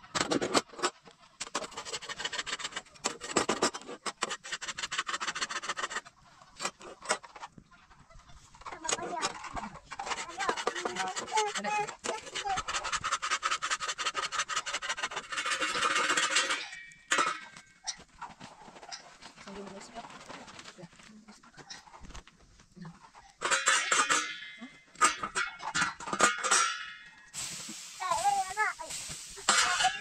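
Wood fire crackling under an iron flatbread griddle, with the scraping and clatter of cooking, and voices at times.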